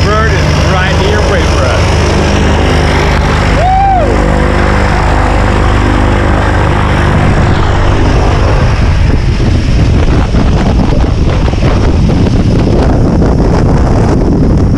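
A jump plane's propeller engine running on the ground with a steady low drone. From about halfway, rushing propeller wash buffets the microphone more and more at the plane's open door.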